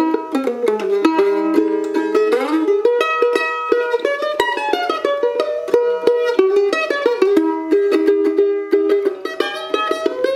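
A revoiced 1949 Gibson F-12 mandolin played with a pick: a fast stream of picked notes and double stops, without a break.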